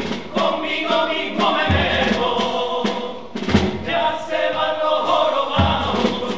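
Chirigota chorus of men singing a carnival song together in unison, over a steady percussion beat of quick light taps with a deep thump about every two seconds.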